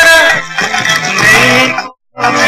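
A live song with acoustic guitar: a sung note ends about half a second in and the instrumental accompaniment plays on more softly. The sound drops out to silence for a moment at the very end.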